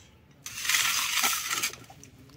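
A loud hiss from a steaming cooking pot with a few light metallic clinks of pot, lid and ladle. It starts abruptly about half a second in and lasts a little over a second.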